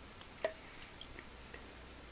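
Quiet room tone broken by a single sharp click about half a second in, then a few faint ticks: handling noise as a hand touches the subwoofer and the camera.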